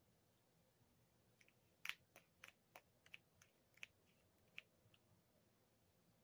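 Faint, scattered plastic clicks and taps, about a dozen between a second and a half and four and a half seconds in, from a pump bottle of Make Up For Ever HD Skin foundation being handled.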